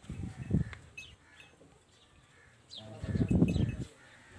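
Two loud, low rumbling noises, a short one at the start and a longer one about three seconds in, with faint small-bird chirps in the background.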